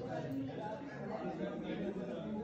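Indistinct chatter of several students talking in a classroom, no one voice standing out.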